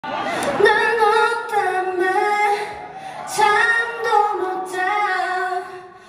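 A woman singing unaccompanied into a microphone through a theatre sound system, in two long phrases with a short breath about halfway through.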